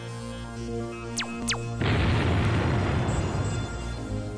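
Synthesized intro music with a steady held chord, two quick falling whistles a little past a second in, then a loud boom with a rush of noise that fades away over about two seconds.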